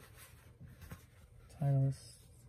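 Faint rustling and light scratching of caps being handled, then a man's short hummed 'mm' near the end, held on one pitch and the loudest sound.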